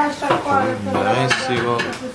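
Dishes and cutlery clattering at a kitchen counter, with a few sharp clinks in the second half, under people talking.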